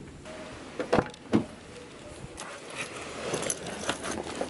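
Keys jangling with a few sharp clicks about a second in, as a car door's handle and latch are worked.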